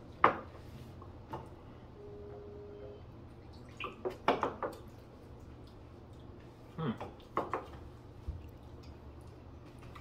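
A small drinking glass set down with a sharp knock on a wooden tabletop, followed by quiet sips, swallows and lip sounds, with a few lighter glass knocks against the table later on.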